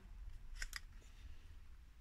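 Faint handling of a metal paper clip and a small scrap of paper, with two or three small ticks about two-thirds of a second in.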